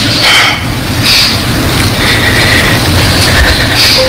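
Audience applause in a council chamber, loud and steady, breaking off as the speaker resumes.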